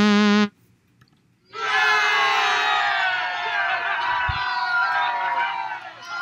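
A held note cuts off, and after about a second of silence a recorded crowd of children cheers and shouts: the praise sound effect of a quiz slide, played on reaching the 'Terrific' slide.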